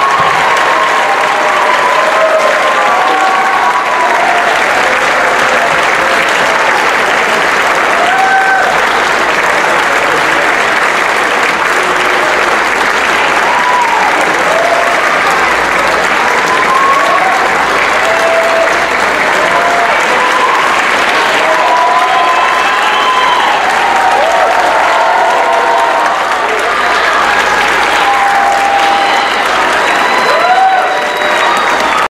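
Audience applauding steadily, with scattered cheers and whoops over the clapping.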